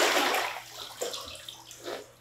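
Water in a filled bathtub splashing and sloshing around a person sitting in it. A loud rush of water fades over the first half second, then smaller splashes and drips follow, with a short splash about a second in and another near the end.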